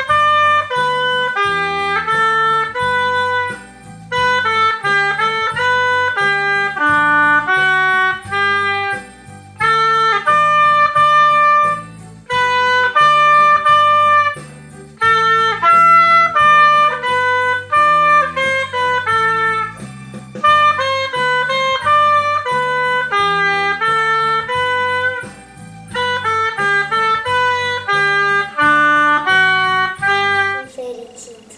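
Oboe playing a melody in phrases of a few seconds each, with short breaths between them, over a low bass accompaniment.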